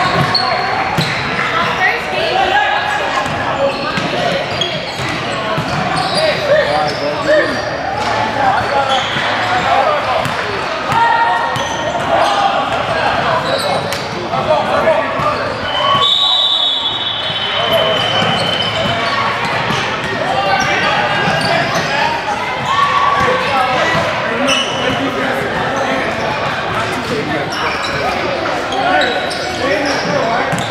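Indoor basketball gym ambience: indistinct chatter of players and basketballs bouncing on a hardwood court, all echoing in a large hall.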